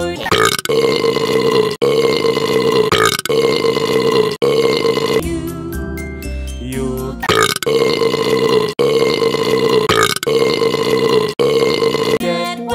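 Long, drawn-out burps standing in for the sung words of a children's song, over its backing music. They come in two runs of several burps each, with about two seconds of music alone between the runs.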